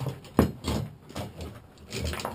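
A steel Conibear body-grip trap and its chain being handled, giving a few scattered metal clinks and knocks, the sharpest about half a second in.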